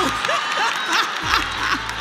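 Live audience laughing and applauding at a stand-up comedian's punchline, with the comedian's voice breaking through.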